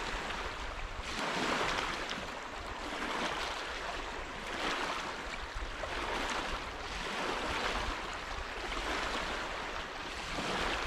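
Small lake waves washing onto a pebble shore, each wash rising and falling about every second and a half.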